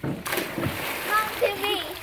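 A child shooting off the end of a pool water slide and plunging into the pool: a sudden loud splash about a quarter second in, followed by churning water.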